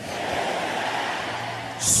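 A large congregation praying aloud all at once: a steady wash of many voices with no single voice standing out, easing off slightly toward the end.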